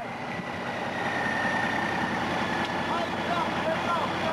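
Fire engine's diesel engine idling steadily, heard close to its exhaust outlet, with a faint high tone over it.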